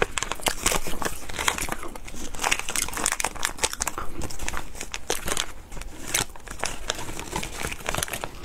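A plastic snack packet being torn open and crinkled by hand: a dense, continuous run of crackles and rustles.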